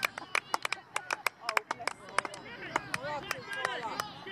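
Scattered hand claps from a few spectators, sharp and irregular, several a second, with faint distant shouting from the pitch.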